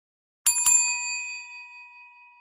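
Bell sound effect for a subscribe button's notification bell: struck twice in quick succession about half a second in, then ringing out and slowly fading.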